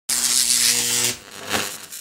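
Logo intro sound effect: about a second of loud, buzzing hiss over a steady low hum, cutting off sharply, then a short whoosh-like swell that fades away.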